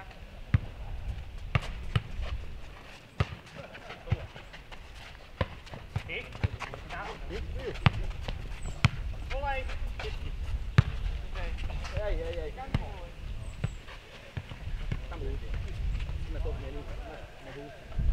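A football being kicked and bouncing on a dirt court during a futnet (nohejbal) rally: a string of single sharp thuds, irregularly spaced, with players shouting between them.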